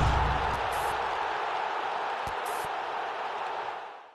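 Broadcast logo sting for an ESPN+ end card: a deep boom hit followed by a long whooshing wash that slowly fades out, with a few faint high clicks along the way.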